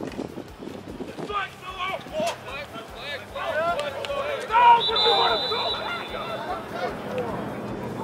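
Players and sideline onlookers shouting across a flag football field, louder in the second half. About five seconds in, a referee's whistle blows one steady blast of about a second, ending the play.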